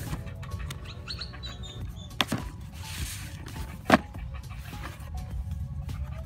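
Cardboard box being opened by hand: two sharp snaps as the lid flap comes free, the second the loudest, with a brief rustle of cardboard between them. Soft background music runs underneath.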